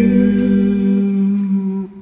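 A voice humming one long held closing note over the last of a soft backing track. The backing drops away about a second in, and the hummed note stops just before the end.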